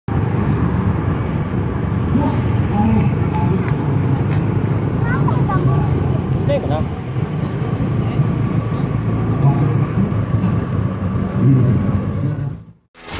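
Honda Scoopy scooter on the move: a steady rumble of its single-cylinder engine, tyres and wind on the handlebar-mounted microphone.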